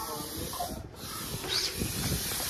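Steady hiss of air rushing into an inflatable pool ring as it is pumped up.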